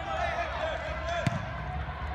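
One sharp thud of a ball being struck, a little past the middle, in an echoing indoor sports hall. Under it runs a wash of distant voices and short high squeaks.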